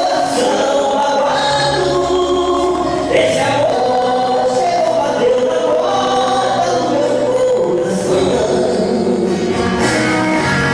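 Two male voices singing a gospel song together through microphones, with held notes over instrumental accompaniment.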